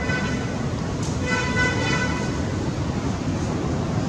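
A vehicle horn sounds twice, a short toot and then a longer one of about a second, over a steady low rumble.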